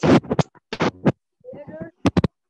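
A voice reading over an online call, broken up by loud, short crackling bursts in the first second, then a short stretch of clearer speech about a second and a half in.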